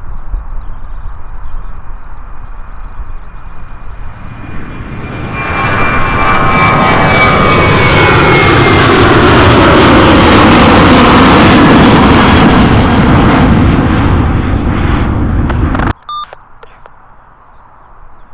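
A Boeing 737's twin jet engines at take-off thrust. The sound grows from a distant rumble to a loud roar as the jet climbs out past, with a whine that falls in pitch as it goes by. About two-thirds of the way through it cuts off suddenly, leaving a much quieter, more distant jet rumble.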